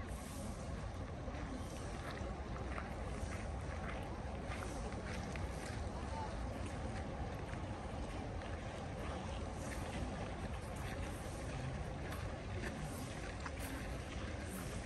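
Steady outdoor background: wind rumbling on the microphone, with faint crunching footsteps on a gravel path and distant voices.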